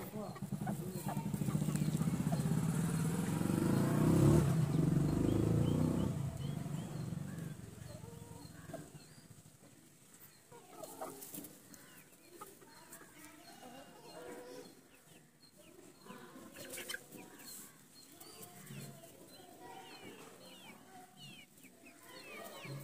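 Chickens clucking, with many short high peeps through the second half. For the first several seconds a louder low rumble covers them, loudest about four seconds in and fading out by about eight seconds.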